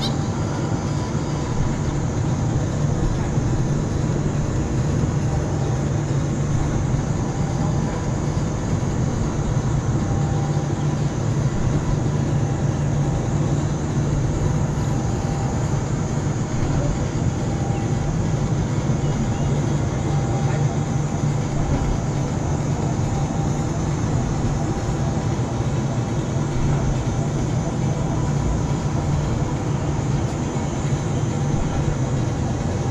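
Steady low mechanical hum and rumble of a giant pendulum amusement ride's machinery as the gondola sways gently near rest, unchanging throughout.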